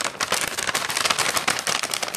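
Plastic pouch of Total Life Changes Iaso Tea crinkling as it is handled close to the microphone: a dense, irregular run of crackles.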